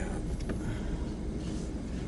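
A 2018 Ford F-150 pickup idling in neutral, heard inside the cab, with a steady low rumble while the truck waits to shift into four-low. A faint click comes about half a second in.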